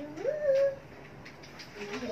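A child's brief high-pitched vocal call about half a second in, rising and then holding, followed by faint household background.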